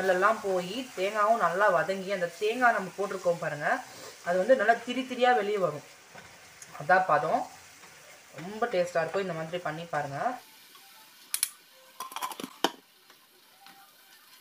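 A woman's voice over the faint sizzle of chicken liver masala frying in a pan as a wooden spatula stirs it. The voice and the sizzle stop about ten seconds in, and a few sharp clicks of the spatula against the pan follow.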